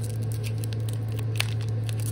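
Foil booster-pack wrapper crinkling and tearing as hands pull it open, with one sharp click about one and a half seconds in, over a steady low hum.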